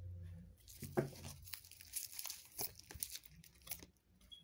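Tarot cards being shuffled and handled: a run of quick papery flicks and rustles, the loudest about a second in.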